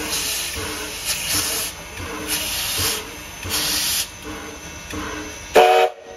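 Sierra Railway No. 3, a 4-6-0 steam locomotive, chuffing slowly at walking pace: hissing exhaust beats about once a second, each carrying a pitched ring. Near the end comes one brief, loud pitched blast, the loudest sound here.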